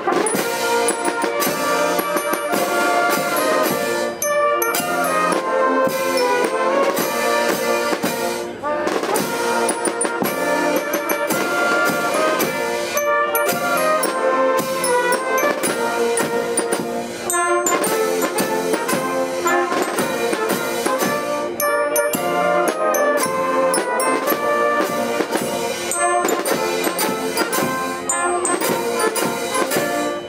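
Wind band playing, with trumpets and trombones carrying the tune over a light drum, in continuous phrases with brief breaths between them.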